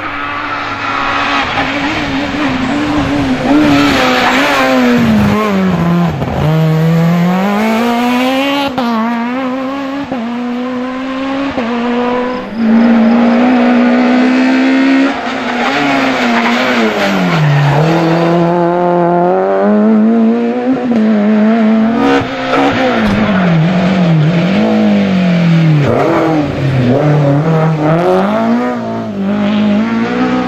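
Rally cars on a tarmac special stage, engines revving hard up through the gears, the note climbing and then dropping sharply on lift-off and braking, several times over as the cars come through.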